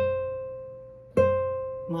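Classical guitar: the note C on the first string, eighth fret, plucked twice a little over a second apart, each note ringing and fading. It is a step in a slow, one-note-at-a-time E minor scale in seventh position.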